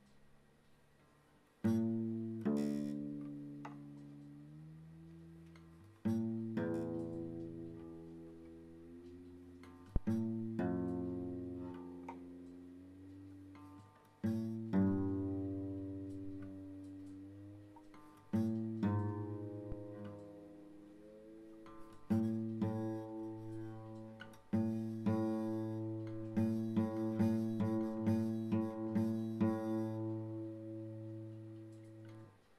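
Acoustic guitar played one note at a time: the fifth fret of the low E string and the open A string plucked in turn, each left to ring out, while the A string's tuning peg is turned and its pitch bends upward toward the reference note. The plucks come every few seconds at first and quicken near the end as the two notes are brought into unison.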